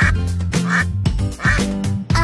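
Duck quack sound effect, three quacks about three-quarters of a second apart, over the bouncy backing music of a children's song.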